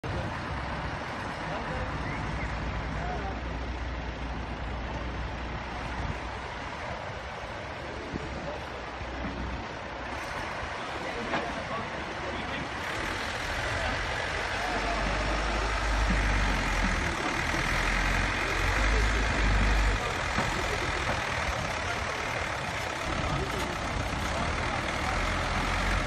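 Backhoe loader's diesel engine running steadily as the machine drives over rough earth with its front bucket down, its low rumble growing louder in the second half as it works closer and pushes into the soil.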